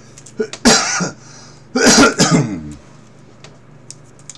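A man clearing his throat and coughing in two harsh bouts about a second apart, the second trailing off lower in pitch.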